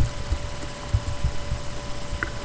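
Irregular low bumps and rumble of handling noise on the webcam microphone, over a faint steady electrical whine.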